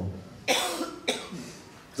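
A man coughing twice, once about half a second in and again about a second in.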